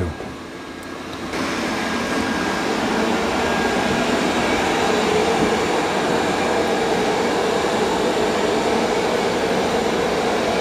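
Roborock S8 Pro Ultra robot vacuum-mop starting up as it leaves its dock after washing its mop pad: its suction motor comes on about a second in and then runs steadily while it begins vacuuming and mopping a tiled floor.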